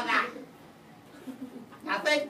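Two short wordless vocal sounds from a person, one right at the start and one near the end, with a hushed room in between.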